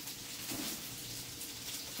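Tortitas frying in oil in a skillet, a faint, steady sizzle.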